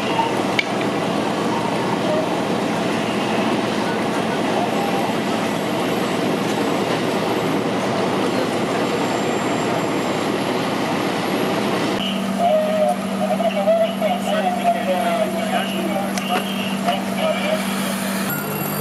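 Fire trucks running at a fire scene: a dense, steady engine noise for about twelve seconds, then, after a sudden change, a steadier low hum with indistinct voices over it.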